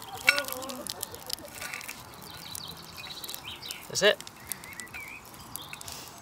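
Small twig fire crackling with scattered sharp pops in the steel fire base of a Ghillie Kettle camp kettle as sticks are laid on it. Birds chirp in the background.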